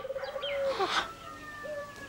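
Birds calling in the background: short chirps and long held notes, with a brief rush of noise about a second in.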